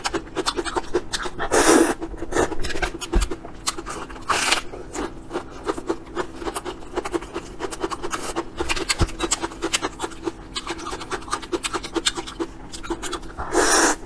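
Close-miked chewing of noodles with rapid wet mouth clicks and lip smacks, broken by louder slurps about two seconds in, around four and a half seconds in, and near the end.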